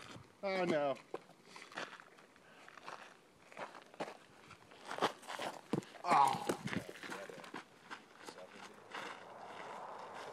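Footsteps on loose cinder gravel, with two brief wordless shouts, one about half a second in and one about six seconds in.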